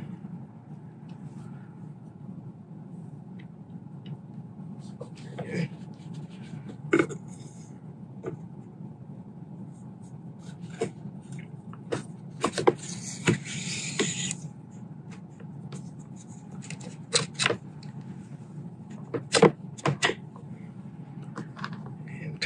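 Handling sounds at a workbench: scattered small clicks and knocks from a grease tub's lid and rifle parts, over a steady low hum. About halfway through, a scraping slide lasting about two seconds as the carbon-fibre shroud is slid back over the air-rifle barrel.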